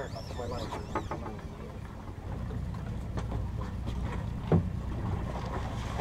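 Steady low rumble of a sportfishing boat's engine at sea, mixed with wind on the microphone. There is a brief louder sound about four and a half seconds in.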